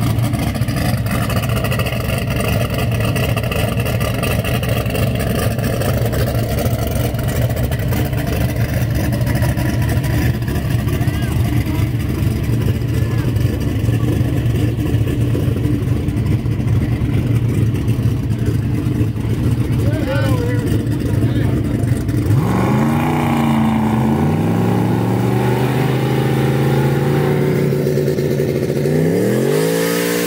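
Fox-body Ford Mustang drag car idling loudly for most of the time. About three-quarters of the way through it is blipped several times, the revs rising and falling, and it ends in a sharp rev-up as the rear slicks start spinning for a burnout.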